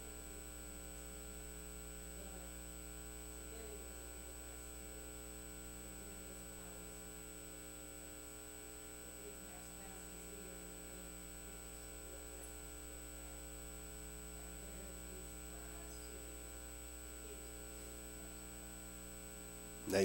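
Steady electrical mains hum from the sound system, with faint off-mic speech under it.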